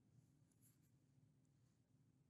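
Near silence with a low hum, and faint scratches of a stylus on a tablet screen.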